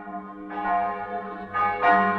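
Church bells ringing: three new bell strikes in two seconds, each ringing on and piling up over the last.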